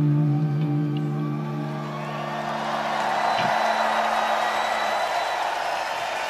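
Final held electric guitar notes of a live metal song ring on and fade out about halfway through, while festival crowd noise swells underneath and takes over.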